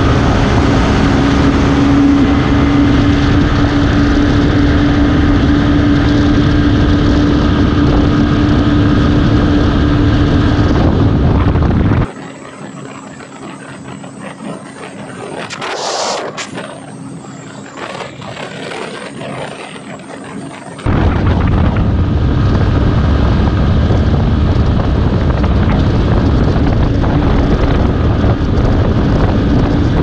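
Wind over the microphone and a Yamaha FZ V3's single-cylinder engine running steadily at highway speed, with one steady engine tone under the wind. About twelve seconds in, the sound drops for some nine seconds to a quieter roadside take, in which a motorcycle passes by and is loudest near the middle. Then the loud riding sound returns.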